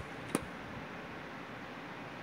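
One sharp plastic click about a third of a second in, from DVD cases being handled and set down, over a steady faint room hiss.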